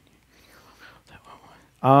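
Speech only: faint, indistinct murmuring voices, then a man's loud, drawn-out "um" near the end.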